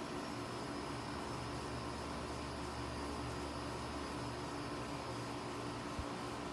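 Steady low hum with a few faint steady tones over an even hiss, like a fan or motor running nearby.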